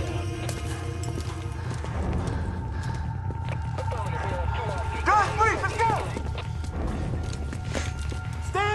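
Tense film score: a steady low drone under a held tone, with scattered soft clicks and knocks. About five seconds in, a brief burst of quickly wavering high vocal-like sounds rises over it, the loudest moment.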